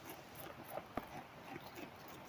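Tobacco hornworm (Manduca sexta) caterpillar chewing a tobacco leaf, picked up by a microphone held against the leaf: irregular crisp clicks and crunches, the sharpest about a second in.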